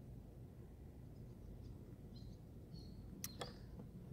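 Quiet outdoor ambience with a steady low rumble and a few faint, short bird chirps, then two sharp clicks near the end.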